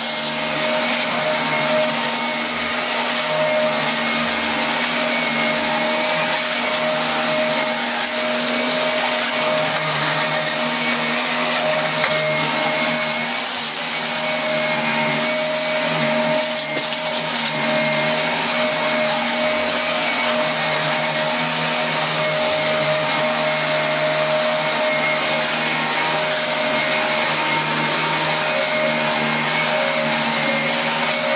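Dyson DC24 upright vacuum cleaner running steadily with a constant whine, sucking porridge oats up off a carpet.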